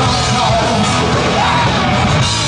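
A rock band playing live: a full drum kit with crashing cymbals, guitars, and a singer's voice.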